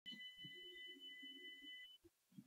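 Near silence with a faint, steady high tone of two notes sounding together, which cuts off near the end.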